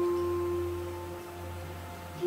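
Soft meditation background music: a few sustained steady tones that slowly fade.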